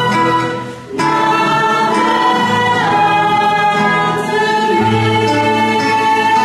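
A congregation and small music group singing a hymn together, accompanied by acoustic guitar and flute. There is a brief break between phrases just under a second in.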